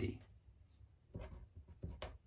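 Marker pen writing letters on paper: a few short, soft scratchy strokes starting about a second in.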